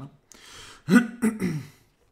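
A man breathes in, then clears his throat with a short, voiced rasp about a second in.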